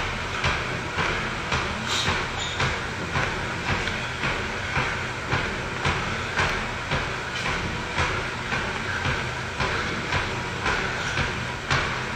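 Steady rhythmic thumping, about two beats a second, over a continuous low hum.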